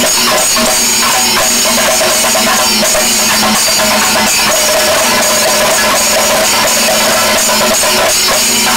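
Kerala temple percussion ensemble playing continuously: maddalam and thimila hand drums struck in a dense rhythm with ilathalam cymbals clashing throughout, and held tones sounding over the drumming.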